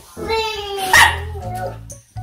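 A small dog barking, a drawn-out pitched cry ending in its loudest sharp bark about a second in, over background music.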